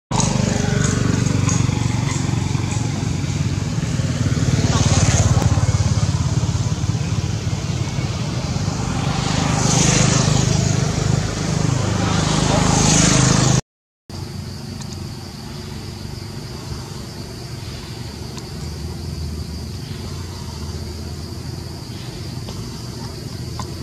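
A motor vehicle runs close by, a loud low rumble with voices over it, and cuts off suddenly about thirteen and a half seconds in. After a short break there is quieter outdoor ambience with a steady high insect drone.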